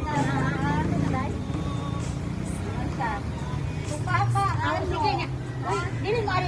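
Several people talking in short stretches, over a steady low hum.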